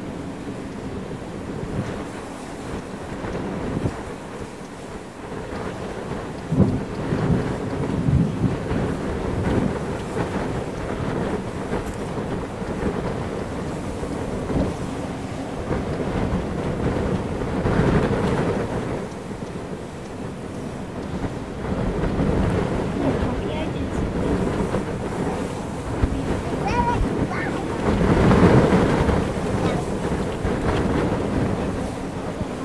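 Strong, gusty wind buffeting the microphone: the inflow wind rushing into a supercell thunderstorm, which the uploader estimates at 50 to 60 mph. It swells in gusts, the strongest near the end.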